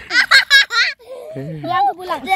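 A young girl laughing in a quick run of high-pitched bursts for about the first second, then a lower voice speaking briefly.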